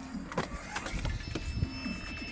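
Electric unicycle rolling along a pavement: a low rumble with a thin motor whine, and a few sharp clicks and knocks in the first second.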